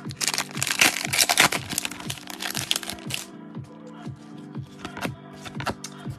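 The wrapper of a 2022 Donruss Optic football card pack crinkling and tearing as gloved hands rip it open, for about three seconds, then scattered sharp clicks. Steady background music plays underneath.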